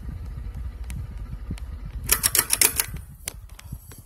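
Sears Roebuck/Emerson 1895 series ceiling fan running with a low hum. About two seconds in comes a quick run of sharp rattling clicks, followed by a couple of single clicks.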